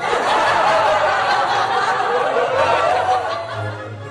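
A group of people laughing, like a comedy laugh track, starting suddenly and fading out near the end, over background music.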